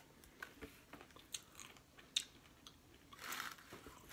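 Close-up chewing and biting of crispy fried food, with scattered sharp crunchy clicks, the loudest about two seconds in, and a longer crunch near the end.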